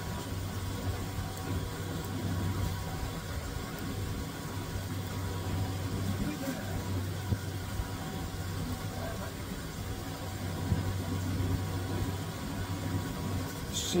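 Steady low mechanical hum of a film scanner's transport running as 8mm film winds slowly through a hand-held cleaning cloth, with a couple of faint clicks.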